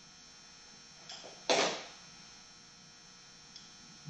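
Steady electrical hum, with one short noisy handling sound about a second and a half in and a faint tick near the end.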